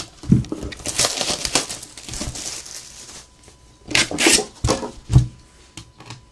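Wrapping crinkling and tearing as a sealed cardboard trading-card box is opened by hand, followed by several sharp knocks as the box is handled.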